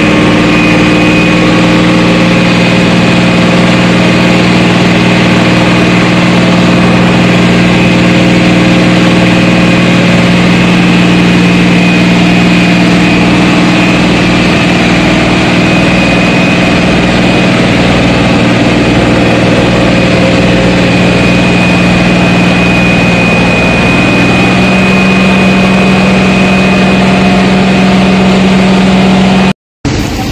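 A large engine running steadily and loudly at close range, its pitch stepping up slightly near the end. The sound cuts off abruptly just before the end.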